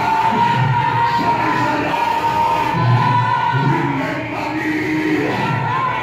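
Church worship music with a congregation of many voices singing and crying out together over a held steady note.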